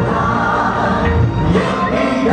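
Live band music: a male lead vocalist singing over the band, with electric guitar and backing voices.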